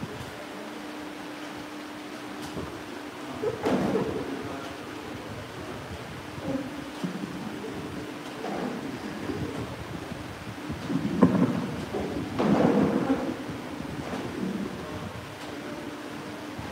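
Handling noise from a microphone on its stand being adjusted: irregular bumps and rustles, the heaviest about four seconds in and again around eleven to thirteen seconds in, over a steady low hum.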